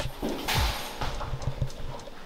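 Footsteps on a hard floor, a string of low thuds in an uneven walking rhythm, with a brief rustle about a quarter of the way in.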